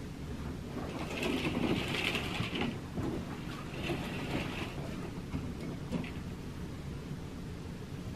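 Hotel-room curtains being pulled open along their track: two sliding, rattling pulls, the longer one about a second in and a shorter one near the middle, over a steady low room hum.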